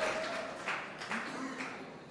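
Audience applause dying away, thinning to a few scattered claps, with a faint voice heard briefly midway.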